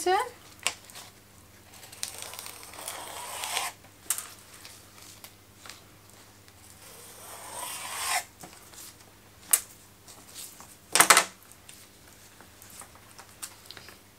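A knife slitting an aspidistra leaf lengthwise into strips: two long drawn cutting strokes, the second growing louder, with scattered light taps and rustles of handling the leaf and one sharp knock about eleven seconds in.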